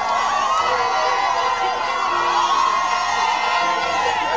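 A large crowd cheering and shouting, many voices overlapping without a break.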